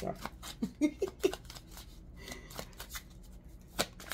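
A tarot deck being shuffled by hand: a quick run of card clicks in the first second or so, then softer card handling, with one sharp snap near the end.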